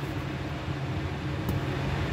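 Steady low machine hum with an even hiss, with a faint tap about a second and a half in.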